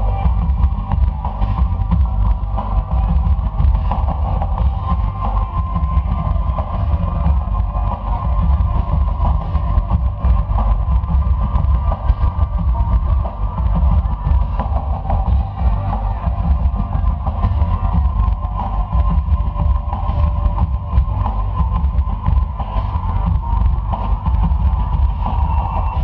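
Rock band playing live and loud through a stage PA: a drum kit with a heavy bass drum under electric guitar.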